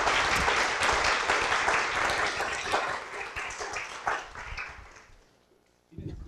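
Audience applauding, the clapping dying away over about five seconds.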